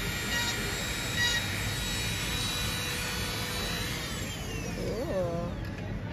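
Steady mechanical whirring hum, with a high whine that falls in pitch about four seconds in and a brief voice near the end.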